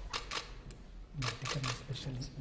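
Camera shutters clicking in quick, sharp clicks: two at the start, one a little later, then a rapid run of four in the second half. A man's voice is speaking low under the later clicks.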